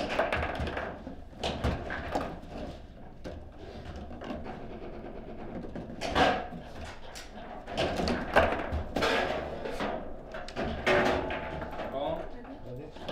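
Table football in play: an irregular string of sharp clacks and knocks as the hard ball is struck by the rod-mounted players and hits the table walls, the loudest about eight seconds in. A goal is scored during this play.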